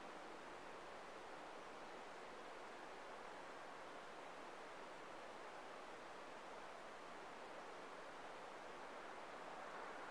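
Near silence: a faint, steady hiss of room tone with no distinct sounds.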